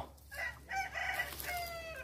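A rooster crowing once: a few short notes that run into a long held note near the end.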